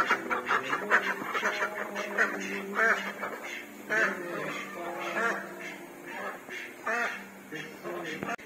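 Domestic ducks quacking repeatedly, a call every second or so, growing fainter toward the end.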